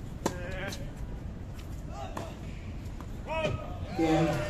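A tennis ball being struck, with a sharp crack about a third of a second in and a few lighter knocks later. Short voices and calls come in between.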